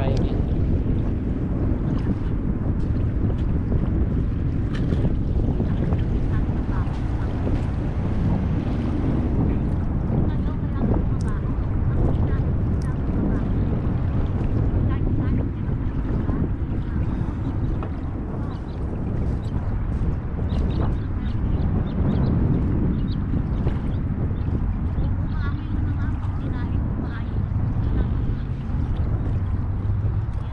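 Wind buffeting the microphone, a steady low rumble throughout, over the faint wash of small waves at the shoreline.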